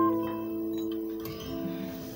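Two acoustic guitars letting their last chord ring out and die away at the close of a song, with a few soft plucked notes under the fading chord.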